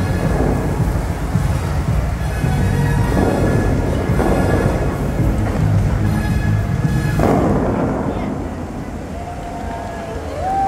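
The Dubai Fountain show: loud amplified show music with the rush and boom of its water jets firing, including sudden rushing surges about three, four and seven seconds in. The sound falls off after about eight seconds as the jets die down.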